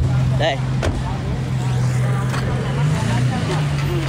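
A motor vehicle's engine running with a steady low hum, its pitch stepping up slightly about three seconds in.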